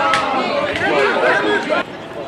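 Several voices of footballers and pitchside spectators shouting and talking over one another, with no clear words. The sound drops abruptly near the end.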